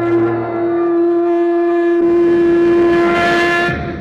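Logo jingle: one long steady note on a horn-like wind instrument, with other music swelling in under it in the last second before it stops shortly before the end.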